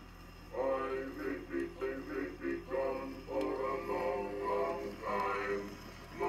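Edison Diamond Disc phonograph playing a 1917 record of a male singer and male chorus singing a medley of US Army camp songs. The singing comes in about half a second in after a brief pause between phrases.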